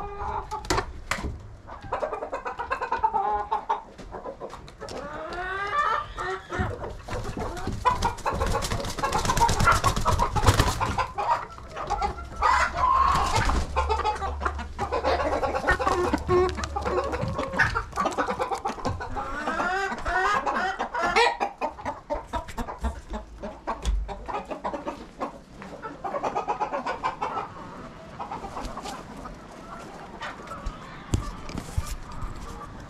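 Domestic hens clucking and squawking at close range, with rising squawks twice, mixed with scattered knocks.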